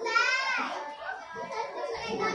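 A classroom of young children chattering over one another, with one child's high voice calling out loudly in the first second.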